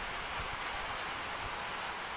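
Steady rain falling on a wet courtyard and trees, an even hiss with no distinct drops or knocks.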